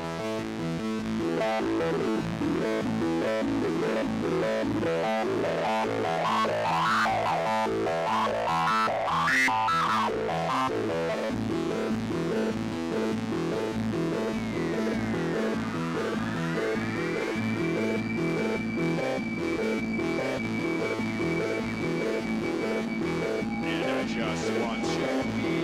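Live dark electronic (witch house) music on synthesizers: a pulsing, repeating chord pattern with swooping, pitch-bent notes in the middle. Later, crossing rising and falling sweeps settle into a held high tone.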